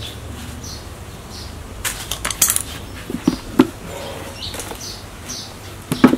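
A hard plastic nursery pot being handled and turned upright. There is a burst of scraping and clicking about two seconds in, then two loud knocks about a second later.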